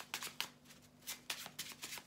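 A deck of playing cards being shuffled by hand in an overhand shuffle, packets of cards slapping and sliding together in a quick, irregular run of soft snaps.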